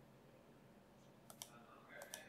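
Near silence: faint room tone, with two quick computer mouse clicks about a second and a quarter in.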